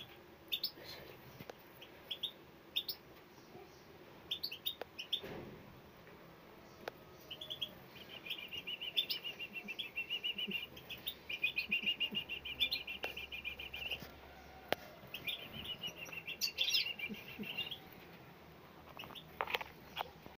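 Four-to-five-day-old songbird nestlings begging in the nest: scattered short, high peeps at first, then rapid trains of high chirps in three runs of a few seconds each from about eight seconds in.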